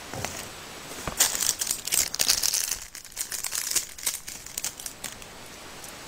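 Crinkling rustle of a pink felt coin purse with an organza ribbon bow being handled and set down on a tabletop, in a cluster of bursts from about one to three seconds in and fainter ones after.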